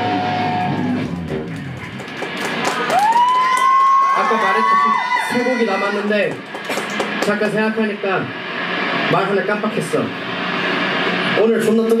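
A live rock band's last chord rings and stops about a second in, followed by voices between songs: a long held shout, then talk, with a few stray electric guitar notes.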